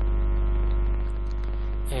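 Steady electrical mains hum with a stack of steady overtones, loudest at the bottom.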